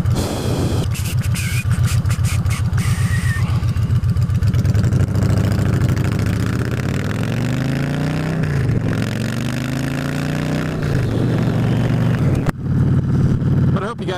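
Victory Jackpot's V-twin engine running under way. It rises in pitch as the bike accelerates, drops with a gearshift about eight and a half seconds in, then rises again.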